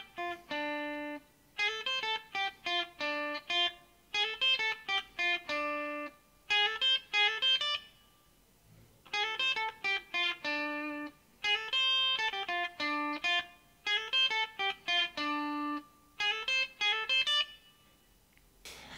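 Electric guitar, a Stratocaster-style solid body, playing a single-note lead lick slowly, note by note. Short runs of picked notes step down in pitch and each ends on a held low note. The phrase repeats several times, with a pause of about a second near the middle.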